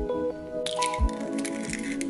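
Chill lo-fi hip-hop background music with a soft beat. From a little past half a second in, a crackly, squishy burst lasting about a second: an egg being cracked and dropped into a glass bowl of creamed butter and cream cheese.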